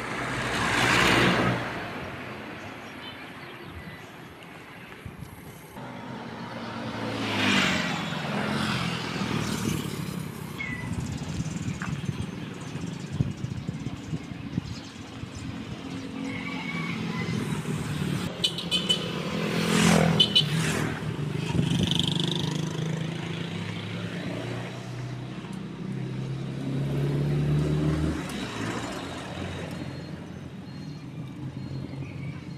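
Road traffic: cars and motorcycles passing close by one after another, each pass swelling and fading, with engine hum in between. The loudest pass comes about twenty seconds in.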